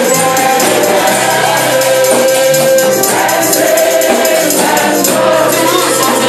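Live gospel praise singing: a woman lead singer and a choir of backing singers singing together through microphones, holding long notes. Shaken percussion keeps a steady beat underneath.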